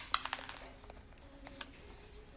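Small hard clicks and taps of a jewellery box and earrings being handled: a quick cluster of clicks at the start, then a few light ones.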